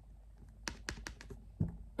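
Tarot cards being handled by hand: a run of light, irregular clicks and taps, starting under a second in.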